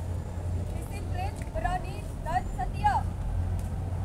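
A steady low rumble throughout, with a person's voice calling out a few short words in the middle, faint and distant.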